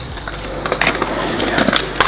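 BMX bike tyres rolling on a concrete skatepark bowl: a rough, steady rush that grows louder as the bike comes closer, with a few light clicks.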